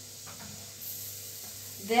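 Boiled sweet potato cubes frying in coconut oil in a nonstick pan, a steady gentle sizzle over medium-low heat as the second side browns.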